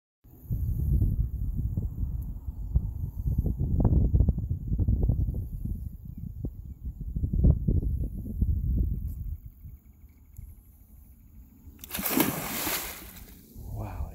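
A low, uneven rumble for the first nine seconds, then a loud splash about twelve seconds in as the alligator lunges and turns back into the water.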